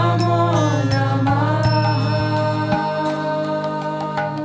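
Devotional kirtan music: a voice sings a drawn-out phrase that glides down in the first second and then settles on a held note. Underneath is a steady low drone that drops out about two-thirds of the way through, with light metallic chimes throughout.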